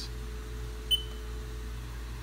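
A single short high beep from a Haas mill control pendant as a key is pressed, about a second in, over a steady low hum.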